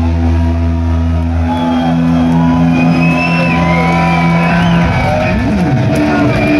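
Heavy metal band's electric guitars and bass ringing out on sustained notes, the low bass note dropping away about a second and a half in, while guitar feedback squeals slide up and down in pitch.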